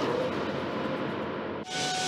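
A noisy whoosh from a broadcast graphic transition, its top end thinning out as it goes, cut off suddenly about a second and a half in. Music with held tones starts right after.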